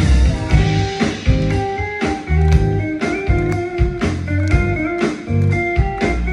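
A live band playing a song, with guitar over bass and drums hitting regularly.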